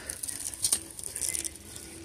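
Faint rustling and a few light clicks of a plush purse being handled and tugged at on a store display, which resists coming loose.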